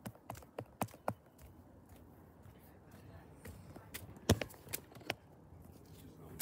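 Scattered light knocks and clicks, a handful in the first second and another cluster about four seconds in: handling noise and footsteps as a hand-held camera is carried about.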